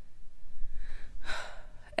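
A woman's audible breathing, close to the microphone: two breathy puffs about a second in, the second one louder.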